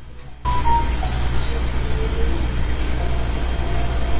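A steady low rumble and hiss that switches on suddenly about half a second in and holds evenly, with a few faint brief tones over it.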